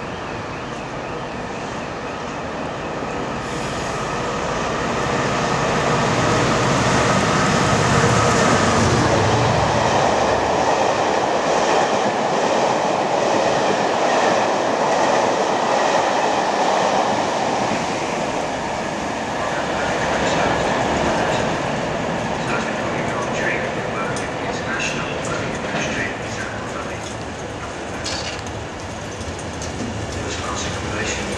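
Locomotive-hauled passenger train approaching and passing at speed: a steadily rising rush that peaks about eight seconds in as the locomotive goes by, then the coaches rolling past with clickety-clack wheel clicks over the rail joints as it draws away.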